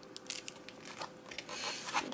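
Cardboard and plastic packaging of a wireless mouse being handled: light crinkling and scattered clicks that get busier near the end.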